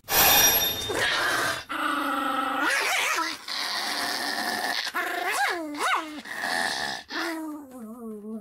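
A small Pomeranian-type dog growling and barking in a long run of drawn-out, wavering calls with short breaks, several sweeping sharply up in pitch.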